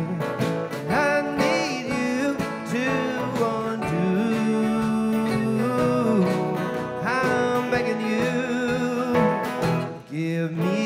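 A live bluegrass/country band playing: acoustic-style guitars and mandolin, with a voice singing the melody over them.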